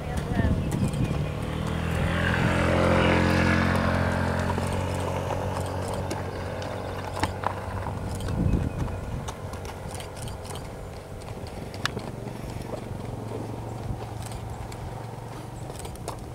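A motor engine's steady hum that swells to its loudest about three seconds in, then carries on at a lower, even level, with a few faint clicks.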